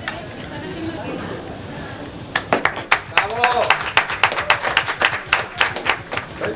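A few people clapping in a quick, uneven patter that starts a little over two seconds in and lasts about three and a half seconds, with a short voice sound among the claps.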